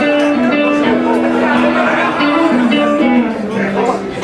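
Live guitar-led band music in an instrumental passage with no singing, held notes stepping from one to the next, with a brief dip in loudness near the end.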